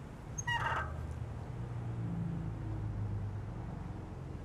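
A short, pitched animal call about half a second in, over a steady low hum.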